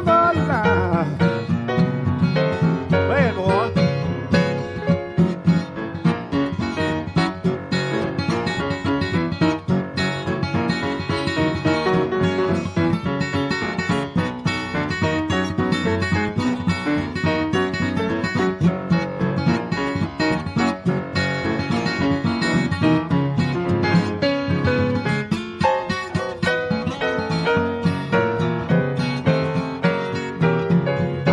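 Instrumental break in a Piedmont blues song: guitar playing a blues accompaniment, with no singing.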